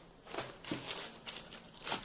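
Plastic packaging of a sponge pack and a Bombril steel-wool pack being handled and set on a table: a few short, scattered crinkles and light taps.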